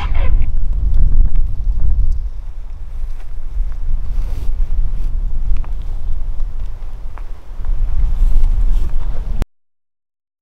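Wind buffeting the microphone, a loud gusty low rumble with a few faint ticks, cutting off abruptly to silence near the end.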